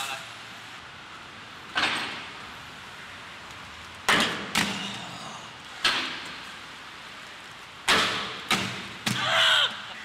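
Six or so sharp knocks and clacks of aggressive inline skates on concrete and the stair rail, spaced a second or two apart, each with a short echo.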